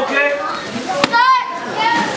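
Children shouting and calling out, with one sharp smack about halfway through followed at once by a single high-pitched child's shout.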